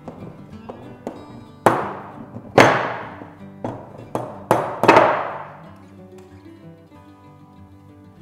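Wooden rolling pin knocking and pressing on the rim of a fluted metal tart tin as it trims off the pastry edge: about six sharp knocks between two and five seconds in. Background guitar music plays throughout.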